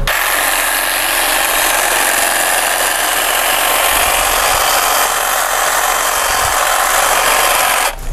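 Huter electric hedge trimmer running steadily, its reciprocating blades clipping thuja shoots, then switched off suddenly near the end.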